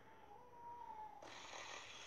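A faint, thin steady tone, then about a second in a fidget spinner set spinning on a drone gives a faint, steady whir from its bearing.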